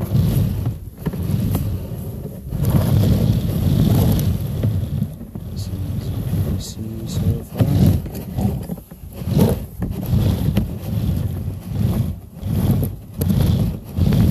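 Low rumbling and irregular thumping from a sewer inspection camera's push cable being fed into a drain pipe, with the thumps coming in a rough pulse in the second half.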